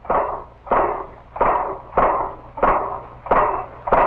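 Automatic punch press cutting and forming wire cranks and axles in a die, stamping in a steady rhythm of about one and a half strokes a second, each stroke a sudden hit that fades quickly.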